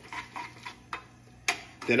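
Metal kitchen tongs clicking against a saucepan while tossing fettuccine: a few light clicks, then a sharper one about a second and a half in.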